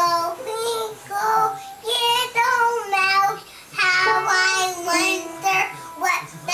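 A young girl singing in a series of phrases while playing notes on an upright piano.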